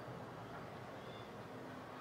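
Faint, steady background noise with no distinct sound standing out.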